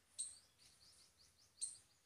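Near silence with faint high bird chirps: a short call just after the start, a run of small chirps, and another call near the end.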